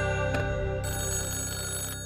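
A rotary dial telephone's bell ringing over sustained background music.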